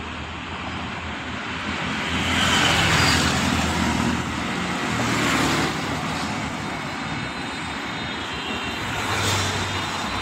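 Road traffic on a wet road: cars, buses and motorcycles going past with tyre and engine noise over a steady low rumble. Louder passes come about two to three seconds in, around five seconds in, and just before the end.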